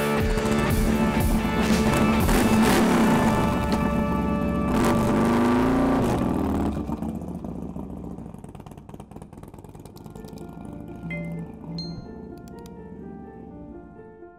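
A motorcycle engine running and revving as the bike pulls away, then fading out over a couple of seconds, with music playing over it.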